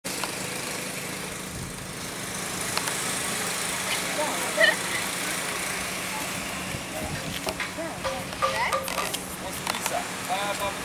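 Steady outdoor road noise from vehicles, with people's voices talking and calling out over it, one voice briefly louder about halfway through.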